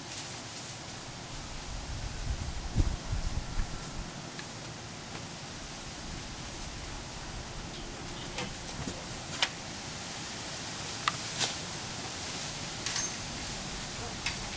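Steady hiss of a garden sprinkler spraying water over the shrubs and lawn. There is a low rumble about two to four seconds in, and a few sharp clicks in the second half.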